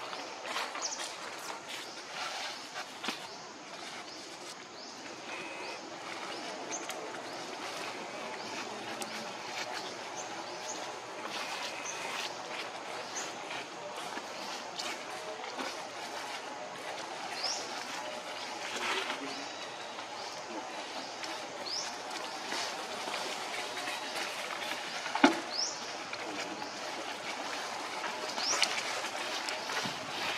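Outdoor woodland ambience: a steady hiss with many short, high, rising chirps scattered throughout and a few light clicks, with one sharp knock about 25 seconds in.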